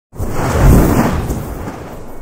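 Logo-intro sound effect: a loud, deep noisy whoosh that starts suddenly, swells within the first second and dies away over the next second.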